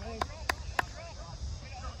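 Three sharp taps about a third of a second apart, over a steady low wind rumble on the microphone, with faint distant shouting.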